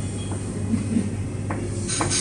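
Restaurant room sound: a steady low hum under a wash of background noise, with a couple of light clicks.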